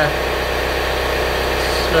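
Integrel alternator-based generator running steadily on a bench test rig, under charging load into a 48 V lithium battery bank.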